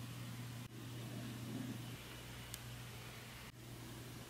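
Quiet room tone: a faint steady low hum under light hiss, with two brief dropouts where the clips cut, about two-thirds of a second in and again near the end.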